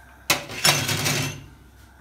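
Gas hob burner being lit: a sharp click from the knob or igniter, then a short rushing noise of gas catching that fades after about a second.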